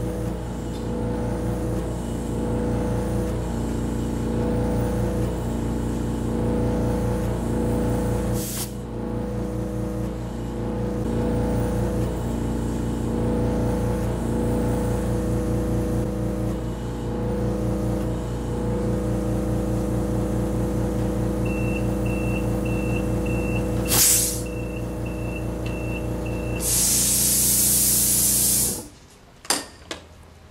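Air machine's compressor running steadily as it inflates a tire to a 35 lb setpoint. Near the end a short beeping buzzer goes off, signalling that the tire pressure has reached the setpoint. Then a loud hiss of air follows, and the compressor cuts off suddenly with a click.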